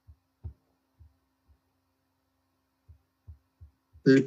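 Near silence: faint room tone with a steady low hum and about eight soft, irregular low thumps.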